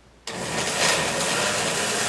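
Countertop blender switched on at full speed about a quarter-second in, then running steadily as it blends a thick mix of ice cream, blueberries and milk.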